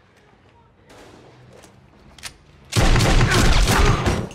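Faint clicks and knocks, then, about three-quarters of the way in, a sudden loud rapid volley of gunshots.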